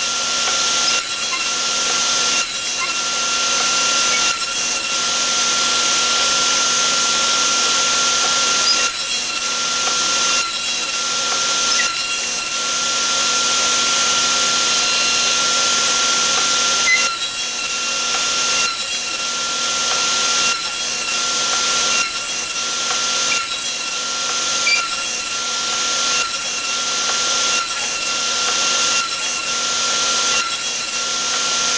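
Table saw running steadily while its blade crosscuts a stick of square wood stock into small cubes, one short cut after another, roughly one a second.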